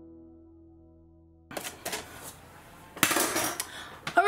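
Soft background music fades out over the first second and a half. Then a metal spoon clinks and clatters against a glass bowl, with a few sharp clicks at first and a louder clatter about three seconds in.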